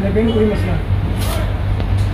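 A row of small motorcycles idling together, a steady low engine hum, with a person's voice briefly at the start.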